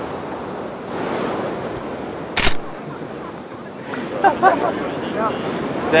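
Steady rush of ocean surf and wind on the microphone, with one short sharp burst about two and a half seconds in and voices starting near the end.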